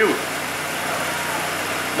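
Steady, even mechanical background noise with no change through the pause.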